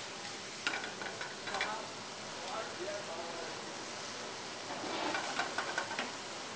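Mushrooms sizzling in very hot, smoking oil in a stainless steel sauté pan, searing to brown; the pan is tossed once at the start.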